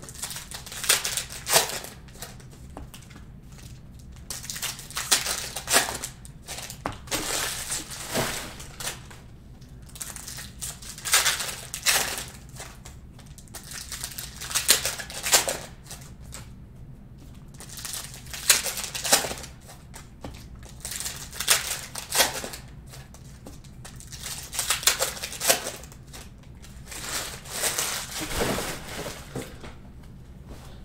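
Cellophane wrappers of Panini Prizm cello packs of basketball cards being torn open and crinkled by hand, in short rustling bursts every second or two.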